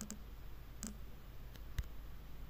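Three short, faint clicks about a second apart over a low steady hum: clicks or taps on the editing device as the timeline playhead is moved.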